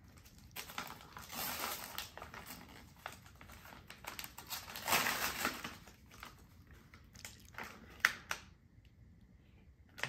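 Christmas wrapping paper being torn and crumpled as a present is unwrapped, in irregular crinkling bursts that are loudest about five seconds in. There is a single sharp click about eight seconds in, after which it goes quieter.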